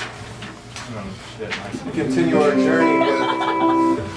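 Electric guitar chord ringing out, held steadily from about halfway through, over low chatter.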